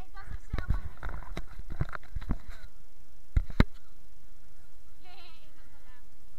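Knocks and rubbing of a body-worn camera jostled as its wearer moves, with two sharp knocks, the loudest sounds, about three and a half seconds in. Children's voices can be heard in the background.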